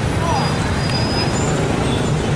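Loud, steady street noise of motorbike traffic, with crowd voices mixed in.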